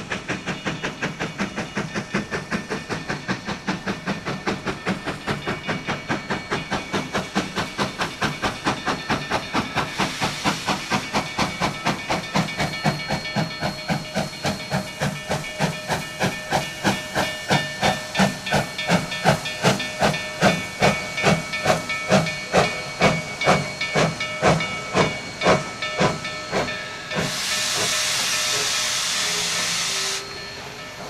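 Narrow-gauge steam locomotive, Durango & Silverton No. 493, a 2-8-2, working with an even chuff that slows from about four beats a second to under two and grows louder. For the last few seconds a loud hiss of steam being let off.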